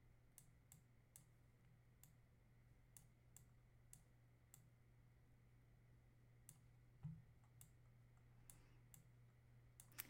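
Faint, irregular clicks of a computer mouse, about a dozen in all, over near silence with a low steady hum. One slightly heavier knock comes about seven seconds in.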